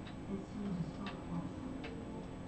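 Two sharp clicks of computer keyboard keys, about a second in and near the end, as the Ctrl+Z undo shortcut is pressed.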